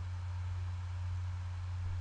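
A steady low hum, a single unchanging tone, with nothing else sounding.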